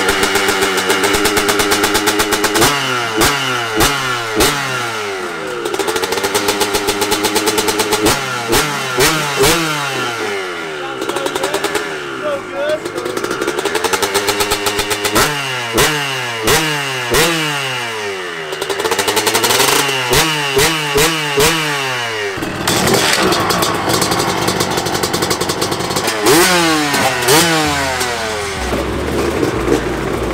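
Dirt bike engines revving in repeated short blips, each a quick rise in pitch, coming in clusters about once a second over the rapid pulse of idling. In the last several seconds this gives way to a rougher, steadier engine sound.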